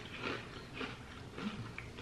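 Faint chewing of baked cheese curls, soft rather than crunchy, about two or three chews a second.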